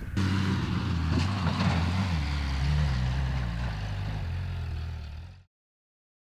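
Engine of an off-road buggy built on a donor car's engine and gearbox, running steadily under way. It fades and then cuts off abruptly about five and a half seconds in.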